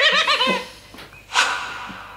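A high, rapidly quavering bleat-like cry lasting about half a second. It is followed about a second and a half in by a short hissing swish that fades out.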